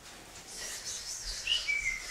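Two boys whispering to each other in a huddle: a faint, hushed hiss with a few thin, whistly tones in the second half.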